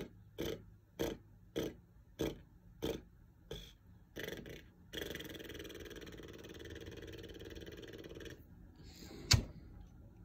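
Short, forceful breaths pushed out from the diaphragm in an even rhythm, a little under two a second and slowing slightly. They are followed by one long, steady exhale of about three and a half seconds. A single sharp knock near the end is the loudest sound.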